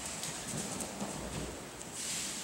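Faint rustling of practice uniforms and a few soft thuds of a person rolling and rising on a padded training mat.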